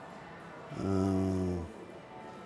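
A man's low, closed-mouth hum, a steady 'mmm' at one pitch lasting about a second, starting a little under a second in.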